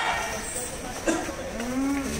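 Cattle lowing: a low call that rises in pitch begins about a second and a half in.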